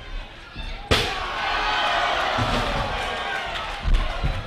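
A single sharp chair shot lands about a second in, striking a wrestler's back, followed by a sustained crowd roar.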